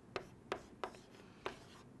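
Chalk writing on a chalkboard: a few short, faint taps and scratches as figures are chalked onto the board.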